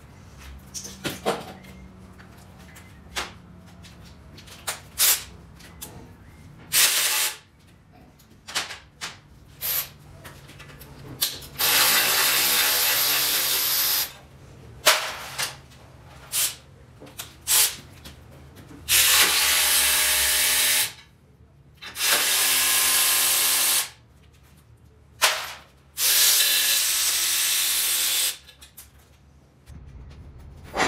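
A power tool runs in several bursts of two to three seconds each, with a hiss and a motor hum, while bolts come off the engine during the teardown. Sharp clanks and knocks of metal parts being handled fall between the bursts, mostly in the first half.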